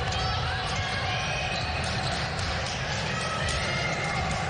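Basketball dribbled on a hardwood court during live play, with repeated bounces and short sneaker squeaks.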